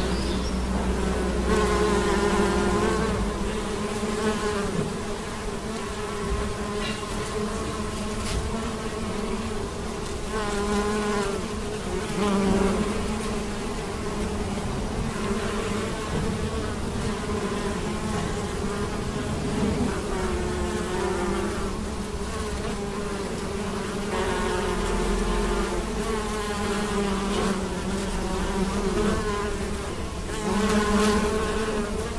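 A swarm of bees buzzing as they forage on maize tassels: a steady wingbeat hum whose pitch wavers up and down as individual bees fly close and away.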